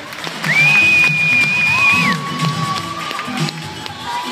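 Show music with a steady beat, over which a crowd cheers. A long high held note sounds about half a second in and gives way to a lower held note near the middle.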